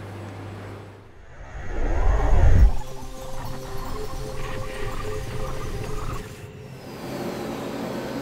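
A loud whoosh transition effect about a second and a half in, its pitch rising and then falling, followed by a few seconds of held musical tones. A steady factory machine hum is heard before it and returns near the end.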